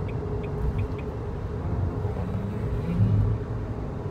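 Steady low road rumble and engine hum inside the cabin of a kei car driving at speed, with a few light ticks in the first second.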